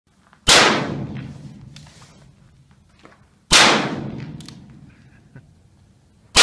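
Freedom Arms single-action revolver chambered in .454 Casull fired twice, about three seconds apart. Each shot is a sharp crack followed by a long echo that dies away over about two seconds.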